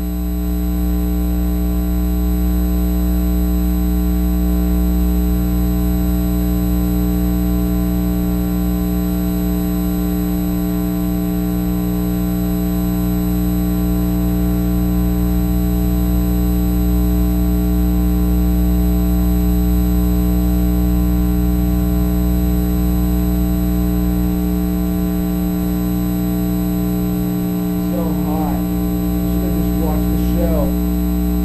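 A loud, steady buzzing drone made of several fixed tones, unchanging throughout; a faint wavering sound enters near the end.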